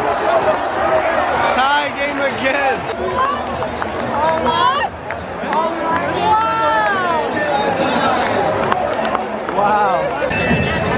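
Large baseball stadium crowd, many voices talking and calling out at once, some voices rising and falling in pitch above the general din.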